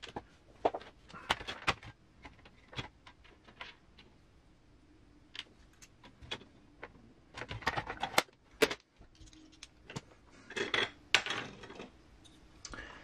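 Small metal screws and RC wheel parts handled by hand on a cutting mat: scattered light clicks and clinks in short clusters. The loudest cluster comes near the end, as a tire and a beadlock ring are picked up and handled.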